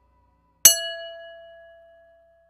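A single bell-like ding sound effect, struck once about two-thirds of a second in and left ringing as it fades over about a second and a half.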